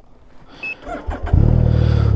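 Can-Am Ryker 900's three-cylinder engine starting about a second in, then idling steadily.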